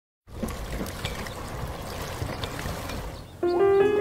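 Water pouring and trickling from a chute onto a small wooden water wheel, a steady splashing with small drips. About three and a half seconds in, louder music with sustained melodic notes comes in.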